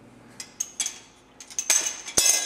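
Metal clinking and rattling of a cable machine's handle attachment and clip being handled at the low pulley: a few separate clicks, then a quick run of ringing clinks near the end.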